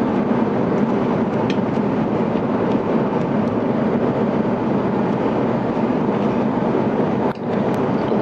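Steady rush of airliner cabin noise inside an Airbus A350-900 in cruise, with a few light clicks of a metal spoon against a dish.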